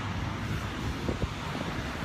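Wind buffeting a phone's microphone over a low, steady outdoor rumble, with one brief click just past the middle.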